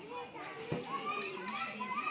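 Several high voices, children's among them, talking and calling over one another, with one sharp knock about a third of the way in.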